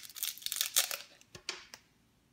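Clear plastic wrapper of a twist-wrapped hard candy crinkling as it is pulled open by hand, followed by two light taps a little after the middle as the bare candy is set down on baking paper.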